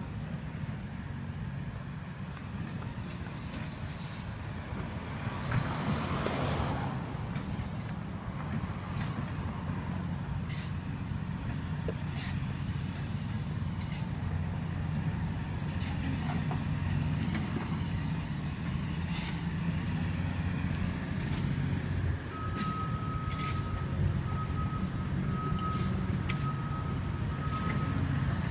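Steady low rumble of a motor vehicle's engine, with a swell of noise about six seconds in and a faint broken beeping tone in the last few seconds.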